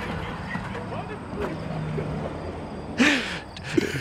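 People laughing quietly after a joke, with a louder voiced laugh about three seconds in, over a steady low hum.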